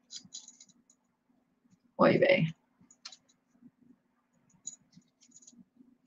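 Faint, scattered small clicks and ticks of a necklace's chain and tag being handled while being untangled. One short vocal sound about two seconds in.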